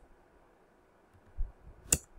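A soft low thump, then a single sharp click of a computer mouse near the end, over faint steady hiss.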